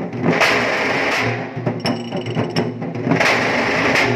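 Nashik dhol-tasha band drumming: large double-headed dhols beaten with sticks in a loud, driving rhythm, with bright crashing bursts recurring about every second.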